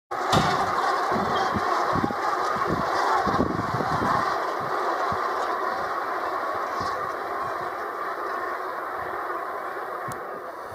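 Dense, steady din of a huge flock of geese calling all at once overhead, easing slightly towards the end, with wind thumping on the microphone, mostly in the first few seconds.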